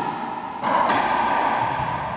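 Steady noisy background of an indoor squash court, with a knock at the start and the noise stepping up louder a little over half a second in.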